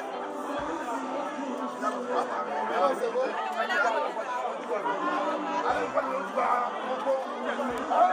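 Several men talking at once, their voices overlapping in lively conversation.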